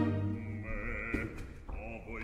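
Operatic singing voice with a wide, even vibrato, against a thin orchestral accompaniment whose low sustained note fades in the first half second.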